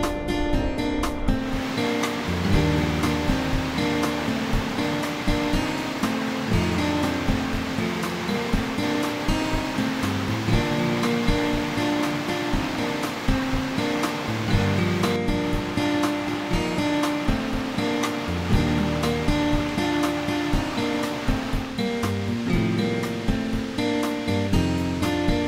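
Background music with steady notes throughout, joined about a second in by the rushing of a small mountain stream running over rocks.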